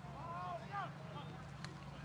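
A faint, distant voice calling out on a football field, heard over a steady low hum of open-air field ambience, with a single small click past the middle.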